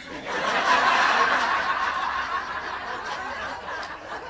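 Audience laughing. The laughter swells within the first second and slowly dies away.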